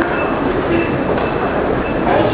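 Steady, dense rumble of rail-station ambience at the head of escalators leading down toward the trains, with faint high tones coming and going.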